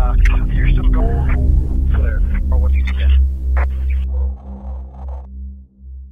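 Intro sound design over the channel logo: a deep, steady droning hum with short clipped voice fragments and clicks laid over it. It all fades away about five seconds in.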